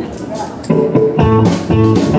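Live country band starting a song: electric guitar, bass and drums come in suddenly about two-thirds of a second in, over crowd chatter, and play on loudly.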